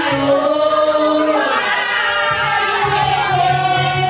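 A group of voices singing a Vodou ceremonial song together, with a steady low beat underneath.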